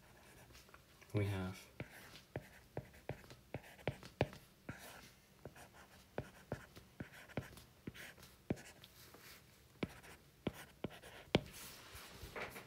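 A stylus tip tapping and ticking on a tablet's glass screen while handwriting math, in sharp, irregular clicks about two a second. A short murmured voice sound comes about a second in.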